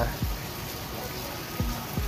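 Steady splashing hiss of an indoor rock waterfall running into a pond. Under it plays music with a low thump about every second and a half.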